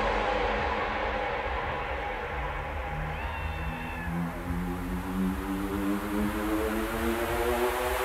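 Psytrance breakdown: the music drops to a quieter, muffled passage with the highs filtered out, while a synth tone slowly rises in pitch from about halfway through, building back toward the full track.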